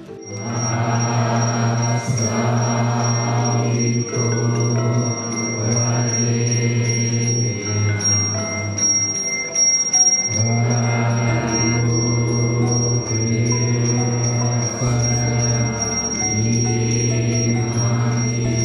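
A small hand bell rung continuously, a steady high ringing, over music of low drawn-out tones that come in phrases about two seconds long.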